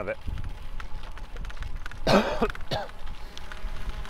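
Low rumble of wind and riding noise on a cyclist's own microphone as he rides a dirt path, with a short breathy vocal noise from the rider about two seconds in.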